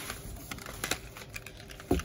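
Hands rummaging through packing paper in a cardboard box: a scatter of light clicks and taps, with one louder knock near the end.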